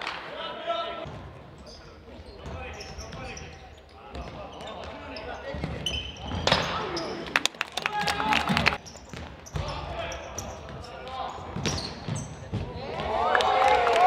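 Futsal ball being kicked and bouncing on a hard indoor court, a run of sharp knocks in the middle, with players' shouts, the loudest near the end.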